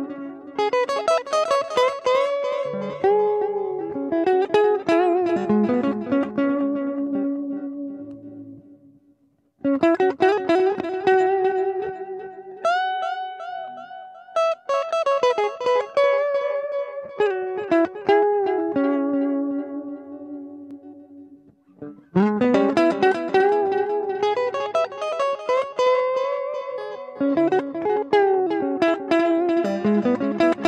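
Electric guitar played clean through an amp, phrases of single notes and chords with delay echoes from a Digitech DigiDelay blended into the dry signal. Three phrases, each trailing away, with short near-silent gaps about nine and a half and twenty-two seconds in.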